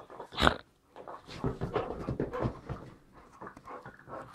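A dog making short noises and breathing sounds while playing: one louder sound about half a second in, then a run of shorter irregular ones.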